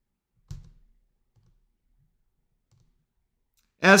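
A single sharp click of a laptop's pointer button about half a second in, followed by a few faint soft taps.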